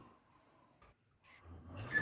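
Near silence, then a faint low sound swelling in the last half second.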